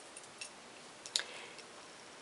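Quiet room tone with a few faint, sharp clicks; the loudest comes a little past halfway.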